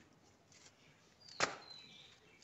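A single sharp click about a second and a half in, against a quiet background with a faint high chirp around it.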